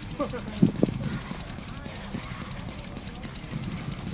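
Indistinct voices of a few people talking, clearest in the first second, with footsteps on dirt and grass as a group walks.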